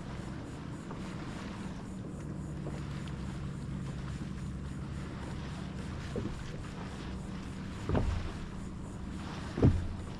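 Boat wake waves hitting the plastic hull of a small Sun Dolphin American 12 jon boat taken broadside: two low thumps, the second about two seconds before the end, over a steady low hum and light wind.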